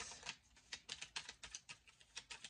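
Faint, quick light clicks, several a second at an even pace, from hands handling a deck of tarot cards.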